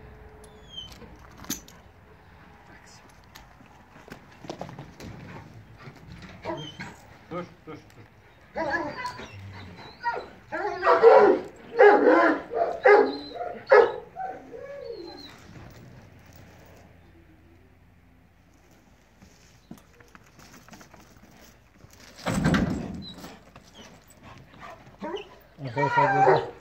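Large Kangal-type shepherd dog on a chain, vocalising in irregular bouts of barks and whines. The loudest run of calls comes from about nine to fourteen seconds in, with one more burst a few seconds before the end.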